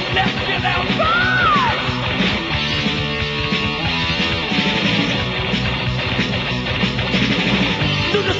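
Heavy metal band playing distorted electric guitar and drums at a steady, loud level, from a 1986 demo tape recording, with a gliding guitar or voice line about a second in.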